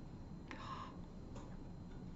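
A person sniffing through the nose, smelling a scented object held close to the face: a faint sniff about half a second in and a shorter one past the middle.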